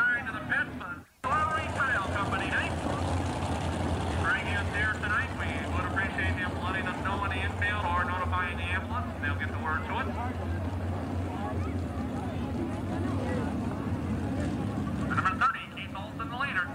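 Modified race cars' engines running steadily as they circle a dirt track, with a voice talking over them that is too unclear to make out. The sound cuts out completely for a moment about a second in.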